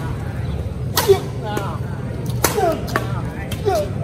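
Badminton rackets striking a shuttlecock in a rally: sharp smacks every second or so, the loudest about a second in, with a low background hum throughout.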